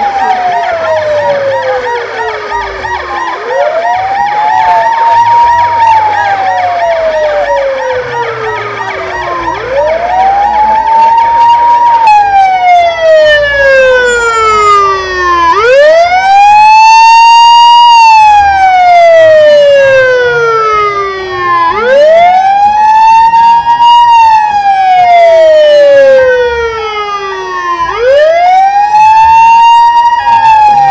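Ambulance siren wailing loudly. Each cycle climbs quickly in pitch and then slides slowly down, repeating about every six seconds. For the first half, denser background sound lies beneath it.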